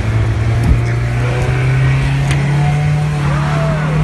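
Car engine heard at close range from on its hood, running with a steady low drone whose pitch rises slowly as the car drives off and gathers speed.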